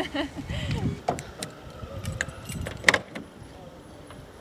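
A bunch of keys jingling on a remote key fob, with several short sharp clicks, the loudest near the three-second mark, as the car's newly fitted electric central locking is worked by remote.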